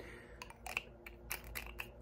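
Faint, scattered small clicks and ticks: a metal spray top being fitted and screwed onto a small glass perfume vial.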